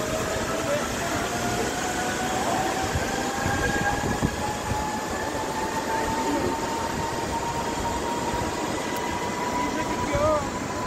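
Zipline trolley pulleys running along the steel cable, a thin metallic whine that rises slowly in pitch, over a steady rushing noise.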